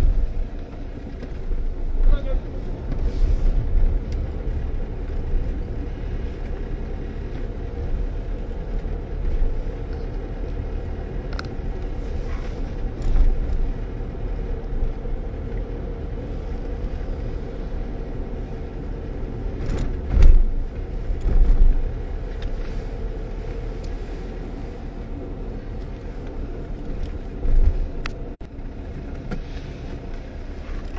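A car driving, heard from inside the cabin: a steady engine and tyre rumble, with a few brief louder bumps along the way.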